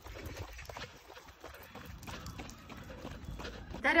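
Footsteps on a paved path with a small dog trotting along on a leash, a run of irregular light taps and rustles, over a low rumble of wind and handling on the microphone.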